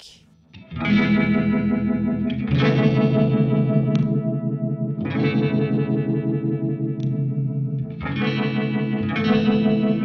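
Electric guitar chords played through Uni-Vibe-style vibe pedals set to a fast speed, the tone swirling and pulsing quickly. A new chord is struck every one to three seconds and left to ring.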